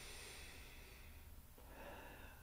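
Near silence: a man's faint, slow breath over a low steady hum of room tone.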